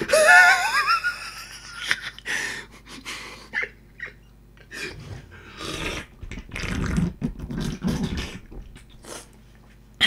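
A man laughing: a high rising laugh at the start, then breathless, wheezy bursts of laughter on and off.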